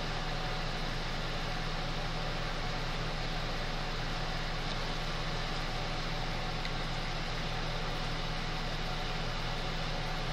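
A steady hum with an even hiss from a running machine, unchanging throughout, with no other sound standing out.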